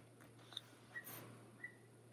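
Near silence: faint room tone with a steady low hum, a soft paper rustle from sticker-book pages about a second in, and two tiny high peeps.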